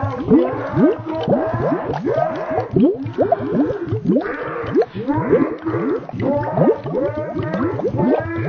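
A boy's shouted German speech, slowed down drastically and processed, so that it becomes a continuous stream of deep, warbling tones that slide up and down in pitch, several glides a second.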